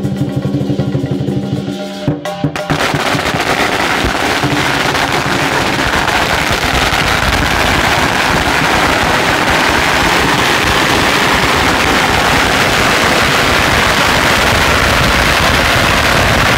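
Lion dance drum and cymbal music plays for the first two seconds or so, then long strings of hanging firecrackers go off, a continuous rapid crackle of bangs that drowns out everything else.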